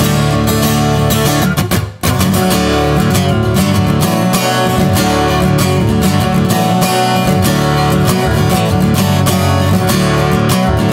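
Steel-string acoustic guitar strummed in a steady chord pattern, an instrumental intro with no singing. The strumming breaks off briefly just under two seconds in, then carries on.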